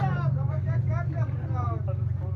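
Indistinct voices of people talking in the background, over a steady low hum.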